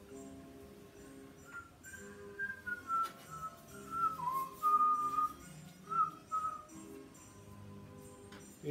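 A person whistling a wandering tune in short phrases for about five seconds, starting a second and a half in, over soft background music.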